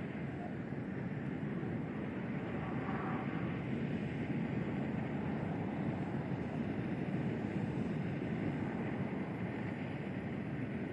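Steady rushing outdoor noise, wind-like, picked up by a launch-pad microphone, with no distinct events. The Atlas V is still on the pad during the countdown, so this is not engine noise.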